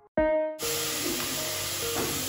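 Chopped tomatoes sizzling in hot oil over sautéed onions, a loud steady hiss that starts abruptly about half a second in. Soft background music plays, opening with a brief ringing note.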